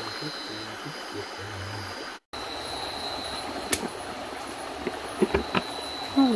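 Running stream water with a steady high insect trill. The sound cuts out briefly a little after two seconds. A few sharp knocks or splashes come near the end.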